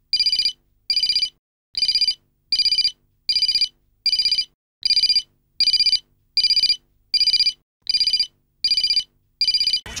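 Mobile phone ringing with an electronic beeping ringtone, short identical beeps repeating about three every two seconds. The incoming call goes unanswered.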